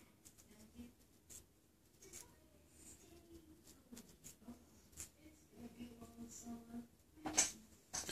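Faint small clicks and taps of an acrylic nail brush and tools being handled in a quiet room, with one short, louder rustle near the end.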